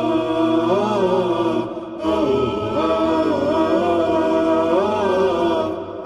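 Unaccompanied vocal chant in the style of an Islamic nasheed intro theme: sustained, wavering sung phrases in several layered voices, with a brief break about two seconds in and another just before the end.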